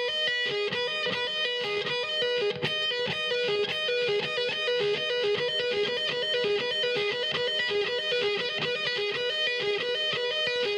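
Electric guitar playing a fast arpeggio lick over and over at an even pace: the high E string at the 8th and 12th frets with a hammer-on to the 10th fret of the B string, mostly upstrokes, not every note picked.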